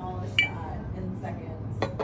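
Two light metallic clinks as a stainless-steel water bottle is handled and turned over, the first with a brief ring.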